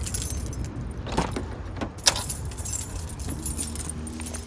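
A ring of keys jangling in the hand while a car door handle is pulled and the door swung open, with several sharp clicks and a loud latch clack about two seconds in. A low rumble runs underneath.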